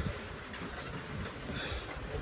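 Steady outdoor background noise on a rain-wet street at night: an even hiss with no distinct events, and a brief bump at the very start.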